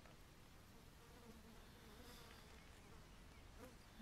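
Near silence with the faint buzz of a flying insect, its hum wavering in pitch through the middle seconds.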